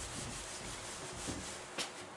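Whiteboard eraser wiping marker writing off a whiteboard, a faint steady rubbing that stops shortly before the end, followed by a short click.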